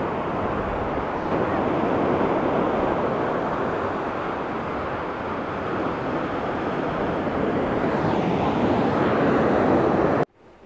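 Steady rush of wind and ocean surf, with wind buffeting the microphone.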